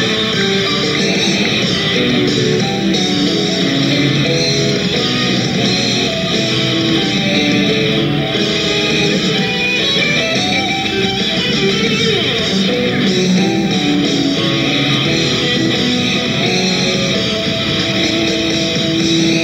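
Live rock band playing an instrumental passage led by electric guitar, with bass and drums, recorded from a concert.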